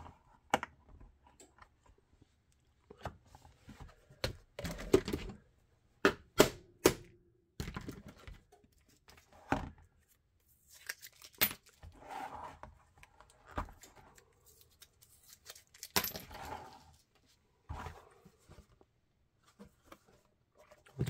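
Blue painter's tape peeled off a holster mold, and the vacuum-formed black plastic sheet handled and flexed: an uneven run of tearing scrapes and sharp plastic clicks and knocks, busiest in the middle.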